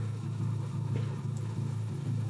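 Pause in speech: room tone with a steady low hum.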